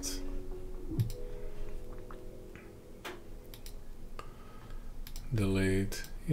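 A few sharp single clicks at a computer, spaced a second or more apart, over a faint hum. Near the end comes a brief voiced murmur from the person at the desk.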